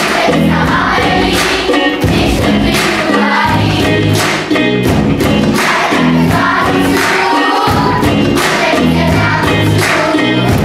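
Armenian pop song: a group of children singing together over a backing track with a steady beat.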